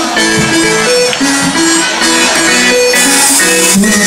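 Loud, amplified live band music: an instrumental passage carried by a melody of held notes stepping up and down, with percussion and no singing.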